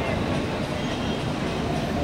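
Steady low rumbling background noise outdoors, with no speech and no sudden sounds.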